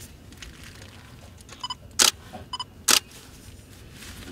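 Nikon digital SLR taking two shots about a second apart through the AF-S DX NIKKOR 18-140mm lens: each loud shutter click comes just after a short electronic beep, the camera's autofocus-confirmation signal.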